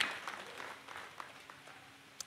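Congregation applauding, the clapping fading away over about two seconds.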